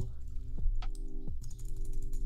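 A few separate keystrokes on a computer keyboard, sharp single taps spread out over the two seconds.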